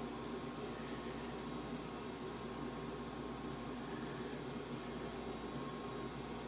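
Steady background hiss with a low hum and a faint steady tone: room tone, with no distinct sound events.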